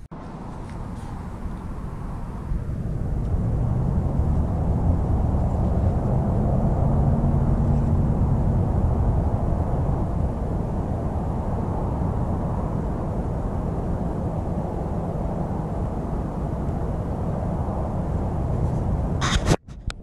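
Steady low rumbling outdoor noise that builds over the first few seconds, with a faint hum in it for a while. It breaks off briefly near the end.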